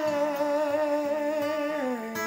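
A man's singing voice holding one long note with vibrato, dropping in pitch near the end, over a ringing acoustic guitar.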